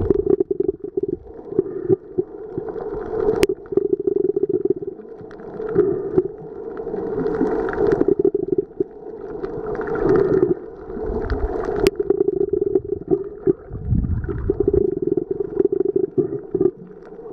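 Muffled underwater noise picked up by the microphone of a submerged Nikon Coolpix AW130 waterproof camera: a dense low rumble and crackle of moving water that swells and fades, with a few sharp clicks.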